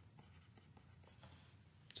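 Faint stylus strokes on a tablet while handwriting an equation, heard as a string of light ticks and scratches.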